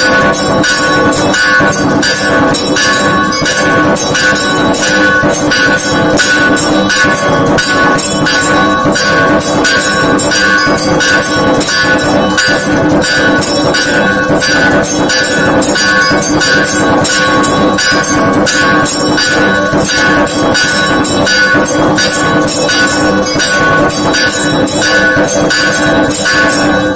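Temple percussion and bells playing during a ritual abhishekam: a fast, even beat of about four or five strokes a second, with steady bell tones ringing over it throughout.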